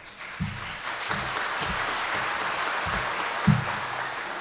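Audience applauding steadily, with a few short low thumps under the clapping, the last one the loudest.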